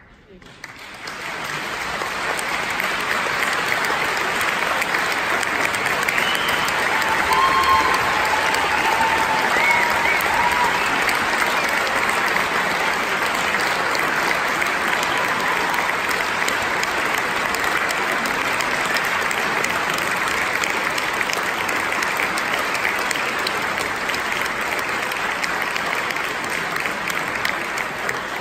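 Audience applause at the end of a performance, rising within the first two seconds and then holding steady and loud.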